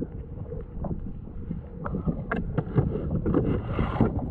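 Wind buffeting the microphone in a steady low rumble, with a run of light knocks and clicks starting about two seconds in.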